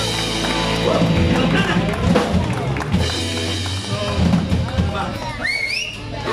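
Live rock band playing, the drum kit prominent, with voices around the room and a high rising whoop near the end.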